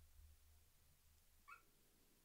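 Near silence broken by one faint, short puppy whine about one and a half seconds in, an AI-generated sound effect in a Veo 3 Fast video clip of puppies playing.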